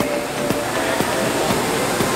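A steady rushing background noise with faint music underneath.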